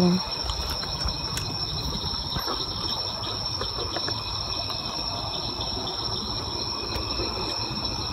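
A steady chorus of night insects, a constant high-pitched trill that holds one pitch, over a low rumble.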